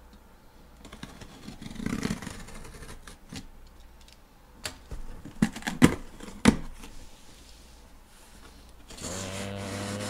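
A cardboard box being handled and opened close up: the cardboard rubs and scrapes, with a few sharp knocks a little past halfway that are the loudest sounds. Near the end a low steady hum begins.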